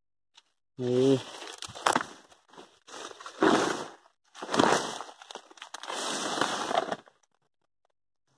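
Grass and leaves crackling and rustling close to the microphone in four or five bursts as plants are pushed aside, with a short low voiced hum about a second in.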